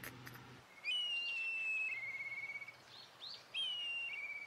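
A bird call, sounding twice: a clear whistled note sliding slightly down, then a short buzzy trill, first about a second in and again near the end.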